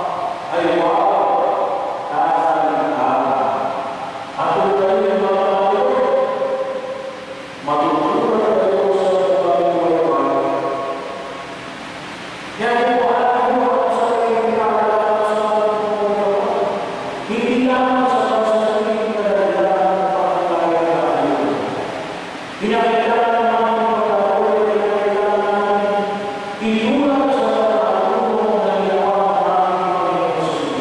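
A man chanting the liturgy into a handheld microphone: about seven sung phrases of a few seconds each on held, slowly moving notes, with short breaks between them.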